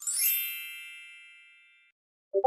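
A bright chime sound effect: one sudden shimmer of several high ringing tones that fades away over about two seconds, a success ding.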